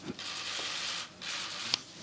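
Press photographers' camera shutters firing in rapid bursts, heard as a dense rattle in two runs: about a second long, then about half a second, the second ending in a sharp click.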